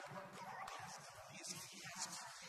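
A man preaching into a handheld microphone, his voice rough and emphatic.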